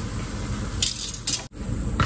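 Butter sizzling under a flour tortilla toasting in a stainless steel skillet, with a few sharp clicks of metal tongs against the pan about a second in as the tortilla is lifted to flip it.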